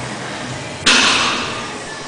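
A single loud metallic clank about a second in, ringing away over the next second.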